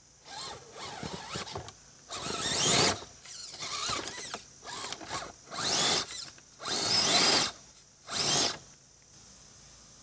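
Redcat Gen8 RC rock crawler's electric motor and geared drivetrain whining in about six short bursts of throttle, each rising in pitch, as it climbs over rocks. The bursts stop near the end.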